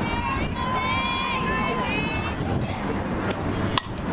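Spectators shouting drawn-out cheers of encouragement, one long held call in the first half, then a single sharp crack of a softball bat hitting the pitch near the end.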